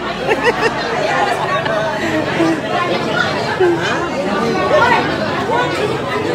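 Several people talking at once: overlapping conversational chatter.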